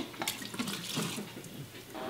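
Liquid pouring and splashing into a glass at a kitchen sink, a soft, fairly quiet trickle.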